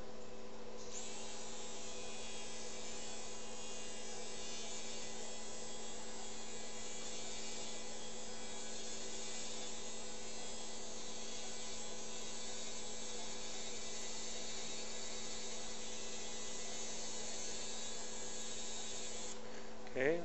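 Motorized arthroscopic burr running steadily in the hip joint, a high-pitched whir that starts about a second in and cuts off shortly before the end. A constant low electrical hum lies underneath.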